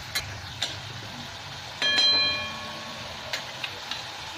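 A flat spatula stirring and scraping masala paste frying in mustard oil in a kadai, with a few light clicks of the spatula on the pan. One short ringing clink about two seconds in is the loudest sound.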